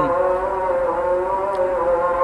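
A steady drone of several held tones that waver slightly in pitch, with no speech over it.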